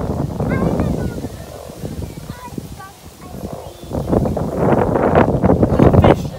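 Indistinct voices, then wind buffeting the microphone, growing loud in the last two seconds.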